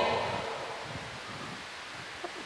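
A pause in a man's speech: the reverberation of his last word dies away over the first second, leaving faint steady room hiss.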